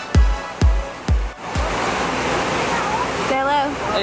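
Electronic dance music with a steady kick drum, about two beats a second, cuts off about a second and a half in. The even rush of the 9/11 Memorial pool waterfalls follows, with a brief voice near the end.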